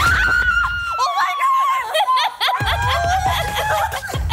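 A young woman screaming with excited delight: two long, high squeals, the first falling slightly, broken by short laughing yelps. A music bed plays underneath.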